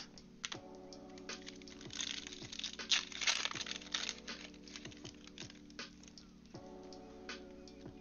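A foil trading-card pack being torn open, its wrapper crackling and crinkling for a couple of seconds, with scattered light clicks of cards and plastic sleeves being handled. Quiet background music plays under it.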